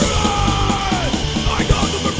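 Hardcore punk band playing: distorted guitars, bass and drums under a yelled vocal, a held shout that falls in pitch about a second in.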